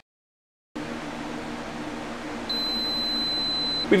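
A power inverter and its load humming steadily, then one high-pitched electronic beep lasting about a second and a half near the end. The beep fits the inverter's low-voltage alarm as the lithium battery is run flat at the end of its capacity test.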